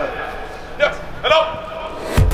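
Men's voices giving short shouted calls, three in quick succession, as players call a rugby lineout.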